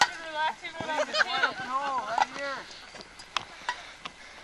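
Several people shouting and calling out without words in the middle of a lively outdoor game, dying down after about two and a half seconds. A few sharp knocks are heard, the loudest right at the start and two more near the end.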